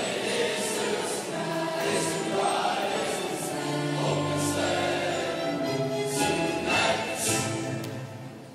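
Junior high school choir of young voices singing together, with the hiss of sung consonants coming through.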